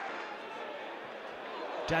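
Steady football-stadium crowd noise, an even wash of sound with no distinct calls or chants; a commentator's voice cuts in at the very end.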